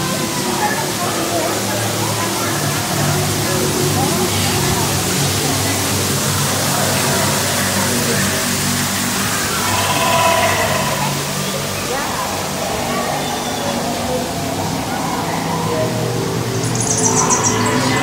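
Ambient ride music with sustained low tones over a steady rush of falling water, with a brief high-pitched twittering near the end.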